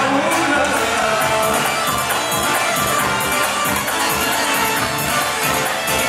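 Live Kabyle band music: guitar, keyboard and hand percussion playing a steady dance rhythm, with crowd noise underneath.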